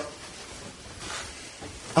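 A pause between phrases of speech: only the steady hiss and room tone of a dictaphone recording.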